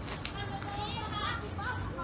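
Faint, high voices of children calling in the distance over a steady low rumble, with a single click shortly after the start.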